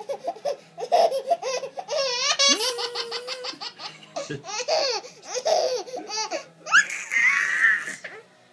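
A one-year-old baby laughing in repeated bursts, with a quick run of laugh pulses a few seconds in and a high breathy burst near the end.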